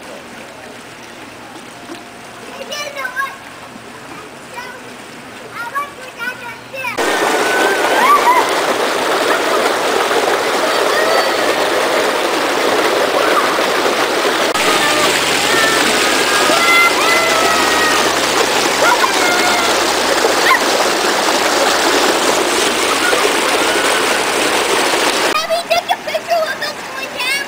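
Steady rushing of water from a pool waterslide, loud from about seven seconds in, with children's voices and shouts over it; before that, quieter pool sounds with faint voices.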